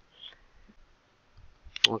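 Low room tone, then a single sharp click near the end.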